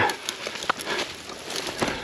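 Irregular rustling and crackling with scattered sharp clicks as a parachute's risers and nylon canopy are handled and dragged over dry grass.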